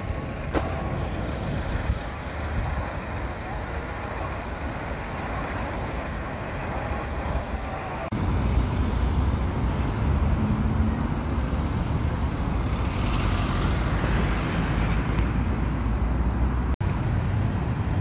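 Road traffic at a busy junction: car, van and lorry engines idling and pulling away, a steady rumble that grows louder about eight seconds in.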